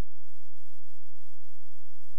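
Steady low electrical hum and faint hiss from an idle playback signal with no programme audio, with four soft low thumps in the first second or so.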